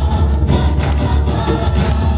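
A group singing a praise song together over loud amplified accompaniment, with a heavy bass and a steady beat of sharp percussive hits.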